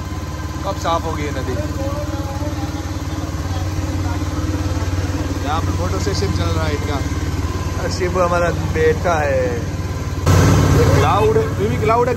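Boat engine running steadily with a low hum, with people talking over it at times. A brief louder rush of noise comes about ten seconds in.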